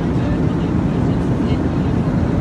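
Steady, loud rumble of an airliner's cabin noise, engines and airflow heard from inside the passenger cabin.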